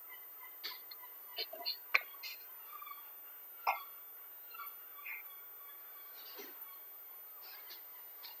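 Quiet video-call audio broken by a few short clicks and knocks at uneven intervals, the sharpest about two seconds in and another near four seconds.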